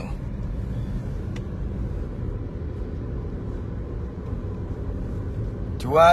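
Steady low rumble of a car on the move, engine and road noise heard from inside the cabin, with one faint tick about a second and a half in.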